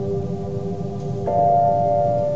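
Calm background music of held, steady tones, with a new and louder chord coming in about a second and a quarter in.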